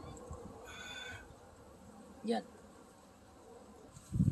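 A faint, brief high-pitched buzz lasting about half a second, about a second in, over a quiet background.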